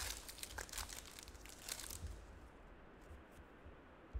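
Foil trading-card pack being torn open by hand, the wrapper crinkling in a run of short crackles over the first two seconds, then quieter.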